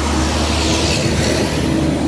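Street traffic: a passing vehicle's steady low engine rumble with tyre hiss that swells and fades.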